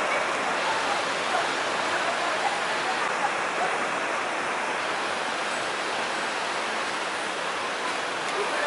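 Steady street background noise: an even, unbroken rushing hiss with no distinct events, with faint voices in it near the start.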